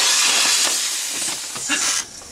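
Suspender-style inflatable life jacket inflating: a loud, steady hiss of CO2 gas rushing from its cartridge into the bladder. The hiss eases off slightly and stops at the very end.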